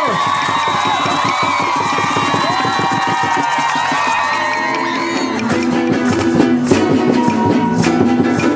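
An audience applauding and cheering, then about five seconds in a group of Venezuelan cuatros starts strumming chords in a steady rhythm.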